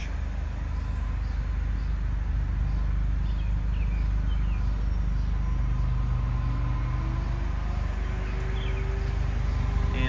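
A vehicle engine running steadily as a low hum. In the second half a faint tone rises slowly.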